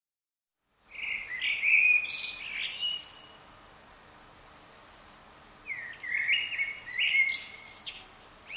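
Songbirds singing: a run of high chirps and whistles starting about a second in, a quieter lull, then a second run from about six seconds in.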